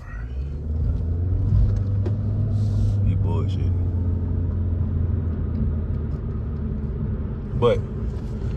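Car engine and road rumble heard from inside the cabin as the car pulls away. It rises over the first second, then settles into a steady low drone.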